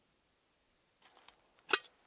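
A metal kettle being handled: light scraping and clicks, then one sharp metallic clink near the end as it is picked up.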